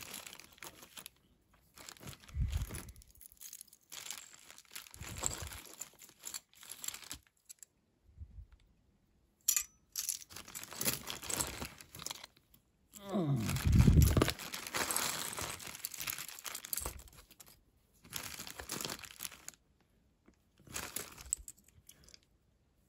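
Hands rummaging through a heap of costume jewelry and plastic bags, in irregular bursts of rustling and crinkling with short pauses between, and a louder bump about two-thirds of the way through.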